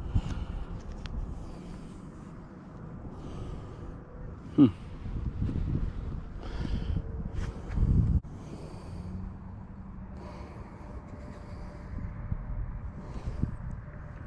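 Close-up handling noise of gloved hands turning a small dug-up find in front of the microphone, with rustling, faint clicks and the finder's breathing. A louder low rub or bump comes near the middle, then the sound breaks off abruptly.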